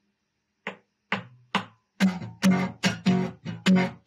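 Acoustic guitar strummed: three single strums, then a steady, driving strumming rhythm from about two seconds in, the opening of an upbeat song.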